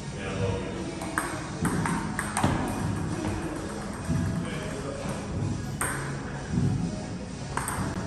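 Table tennis ball clicking sharply off bats and table in a rally, a string of single ticks at uneven spacing, over background music.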